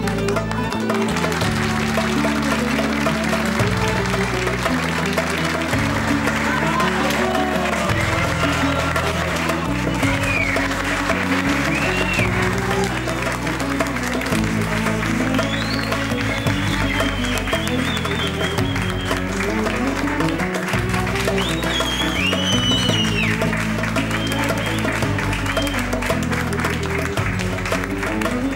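Nightclub audience applauding a singer's entrance over music with a bass line that moves from note to note. The clapping starts about half a second in and keeps going.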